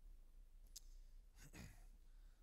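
Near silence: room tone with a low hum, a faint soft click, and a faint breath from the pastor.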